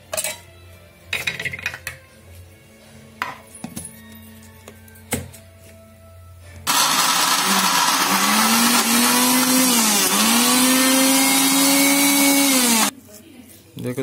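An electric mixer grinder grinding boiled mutton and chana dal runs loudly for about six seconds, its motor pitch dipping twice, then cuts off suddenly. Before it starts there are a few clinks and knocks of a steel spoon against steel bowls.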